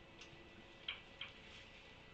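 Near silence over a faint steady hum, broken by three soft clicks, the first about a quarter-second in and two close together about a second in.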